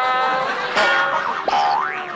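A comedy sound-effect sting: held, steady notes, then a cartoon-style rising glide near the end.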